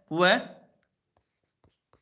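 A few faint, separate light clicks of a stylus tip tapping on a tablet's touchscreen while handwriting is drawn on the screen.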